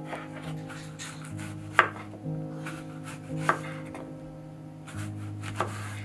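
A knife slicing an apple and knocking down onto a wooden cutting board, a few sharp knocks with the loudest just under two seconds in, over soft background music with held notes.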